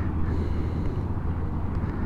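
2017 Triumph Street Twin's 900 cc parallel-twin engine idling steadily through an aftermarket Termignoni 2-into-1 exhaust.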